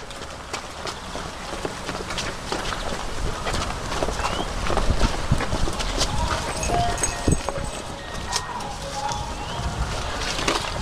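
Footsteps of several people hurrying down stone steps: irregular knocks and scuffs, with scattered voices in between.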